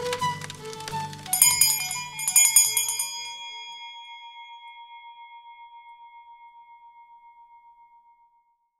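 Background music ends about a second in, then a small bell rings twice, about a second apart. Its ring fades slowly over several seconds with a wavering pulse.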